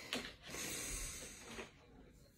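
Faint breathing: a short sharp sniff, then a breath out through the nose lasting about a second.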